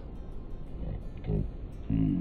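Steady low rumble of outdoor city ambience, with two short pitched sounds: a brief one about a second in and a louder, lower droning tone near the end.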